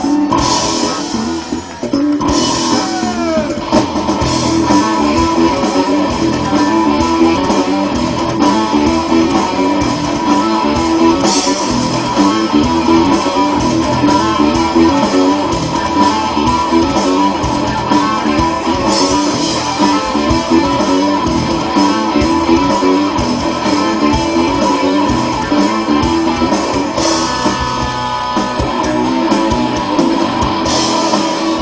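Live rock band playing an instrumental passage: electric guitars over bass guitar and drums, with no singing. The sound dips briefly about two seconds in, then the full band plays on steadily.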